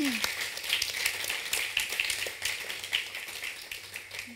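An audience applauding with many hands clapping at once, thinning out near the end.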